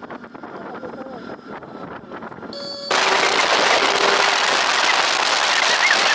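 Riding noise from a motorcycle on the move: fairly quiet road and traffic sound for about three seconds, then an abrupt jump to loud wind rushing over the microphone that stays steady.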